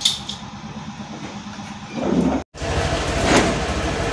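Small motor scooter engine idling with a steady low beat, louder after a cut about two and a half seconds in. There is a short click right at the start and a knock about a second after the cut.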